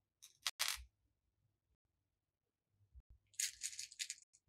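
Small plastic letter beads clicking and rattling in a compartment tray as fingers sift through them: a short burst about half a second in, then a longer run of quick clicks near the end.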